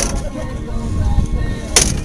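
Handling noise as a large fluke is worked out of a landing net. A low rumble runs under two short, sharp rustling bursts, one at the start and one near the end.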